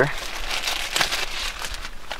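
Plastic packets crinkling as they are handled, with a light click about a second in.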